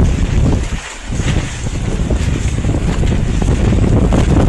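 Strong wind buffeting the microphone: loud, steady rumbling wind noise, with a brief lull about a second in.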